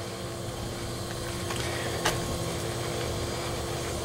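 A steady machine hum with one constant tone running under it, and a single faint click about two seconds in.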